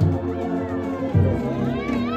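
Brass band with tubas and euphoniums playing a hymn tune: steady, full low brass chords with a heavy bass note landing about once a second. Near the end a brief high call rises and falls over the band.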